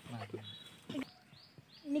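A man's voice making a short, low, held sound near the start, with a brief sound about a second in and then quiet until speech begins near the end.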